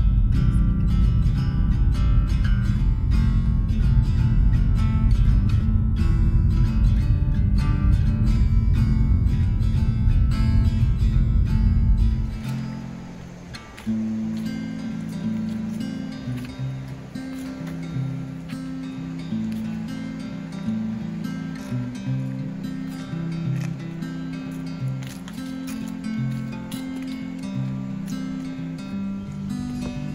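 Background acoustic guitar instrumental with plucked notes. For the first twelve seconds a loud low rumble of car road noise runs under it, then cuts off suddenly, leaving the guitar alone.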